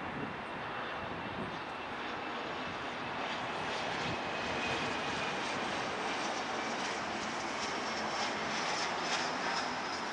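Embraer ERJ-145 regional jet on final approach, its two rear-mounted Rolls-Royce AE 3007 turbofans running with a steady rush and a high whine. The whine slowly falls in pitch as the jet comes closer, and the sound grows a little louder.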